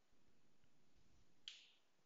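Near silence: faint room tone, broken once about one and a half seconds in by a single short, sharp click-like sound that dies away quickly.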